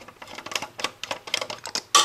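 Irregular small metallic clicks and taps of a screwdriver working loose hardware on a tube receiver's metal chassis, with a sharper click near the end.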